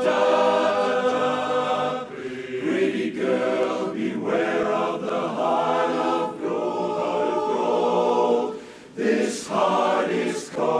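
Large men's barbershop chorus singing a cappella in close harmony: sustained chords in phrases with short breaths between them, a brief drop in level near the end followed by hissed consonants as the next phrase begins.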